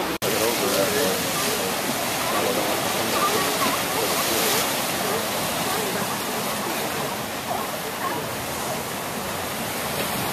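Ocean surf breaking on rocks below a sea cliff: a steady, even rushing wash, with faint voices of people in the background.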